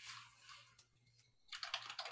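Faint computer-keyboard typing, in two quick runs of keystrokes: one at the start and a longer one from about a second and a half in.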